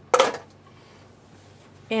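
A single short clack of a small plastic eyeshadow pot being set down against a clear acrylic makeup organizer, right at the start, followed by faint room hiss.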